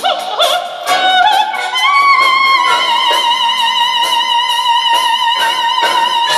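Female operetta singer with a symphony orchestra: her line climbs in the first two seconds to a long high note held with vibrato, over string accompaniment with a few sharp accents near the end.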